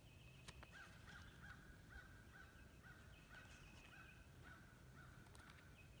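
Faint bird calls: a short note repeated evenly about two to three times a second, with a higher, rapidly pulsed call in stretches over it, and a few faint clicks.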